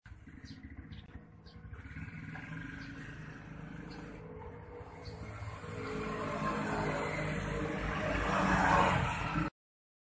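A motor vehicle's engine running in the background, growing steadily louder in the second half, then cut off suddenly.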